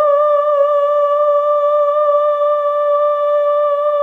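A singer's voice holding one long, high note with a slight vibrato, left on its own as the backing track's last lower tones die away at the start.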